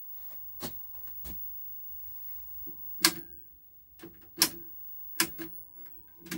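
Push-button channel selector of a Philips KT3 colour TV being pressed, giving about five sharp mechanical clicks spread over several seconds. A faint steady tone plays underneath from the set's speaker and fades out near the end, while a low buzz comes and goes in the second half.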